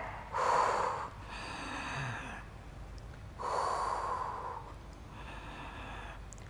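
A woman's audible, paced breathing through the mouth during a Pilates side-plank exercise: four breaths in turn louder and softer, the breathing cued with each movement.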